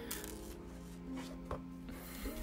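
A few light knocks of hands handling things on a wooden desk, the sharpest about one and a half seconds in, over soft background music.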